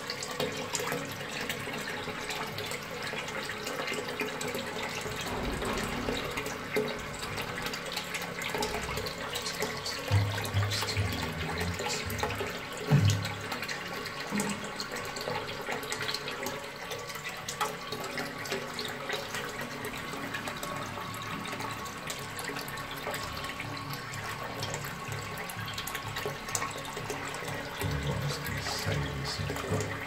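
Armitage Shanks Compact low-level toilet cistern refilling after a flush: a steady rush of water running in through the float valve.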